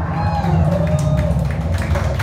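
End of a live rock song: the band's last chord, mostly bass, rings out while the audience cheers and starts to clap.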